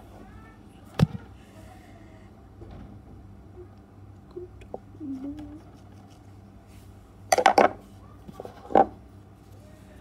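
A knife cutting and scraping the plastic insulation off an electrical power cord to bare its copper wires: a sharp knock about a second in, then a quick run of short scraping strokes and one more stroke near the end.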